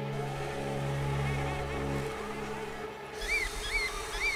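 Small electric motor of a wheeled robotic spy camera humming, then stopping about halfway through. Near the end a guillemot chick peeps three times, each call rising and falling.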